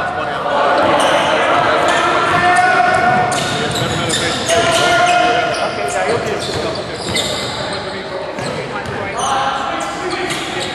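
Basketball game sounds in a large gym: a basketball bouncing on the hardwood floor, with players' and spectators' indistinct voices echoing in the hall.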